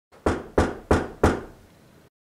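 Four evenly spaced knocks on a door, about three a second, each dying away quickly.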